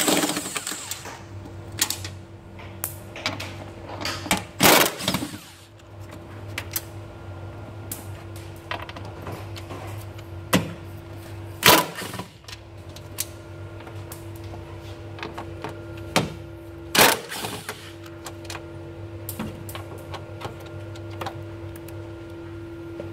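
Cordless impact gun running in several short hammering bursts as it breaks loose and backs out the fender's Torx bolts, with smaller clicks of the tool and bolts in between. A steady low hum runs underneath.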